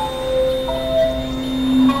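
Sustained electronic synthesizer tones: a low steady drone with several higher held notes over it, one of them coming in about two-thirds of a second in.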